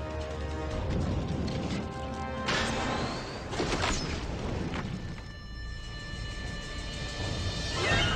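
Dramatic film-trailer music with three loud crashing hits about a second apart, followed by held sustained tones.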